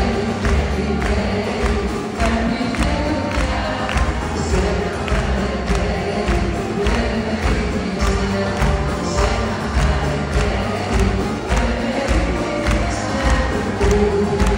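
A live band playing a song with a steady beat, with many voices of the audience singing along.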